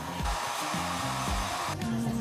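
A hair dryer blowing for about a second and a half, then cutting off, over background music with a steady beat.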